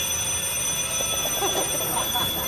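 Alarm clock ringing with a steady, shrill high-pitched tone that has just started.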